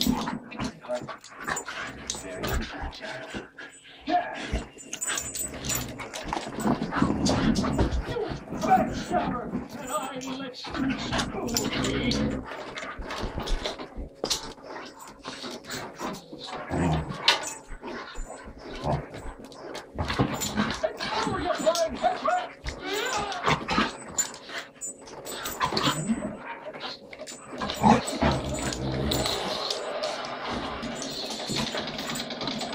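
A small Staffordshire bull terrier and larger dogs play-fighting, with irregular dog play noises and scuffling throughout, and a person laughing partway through.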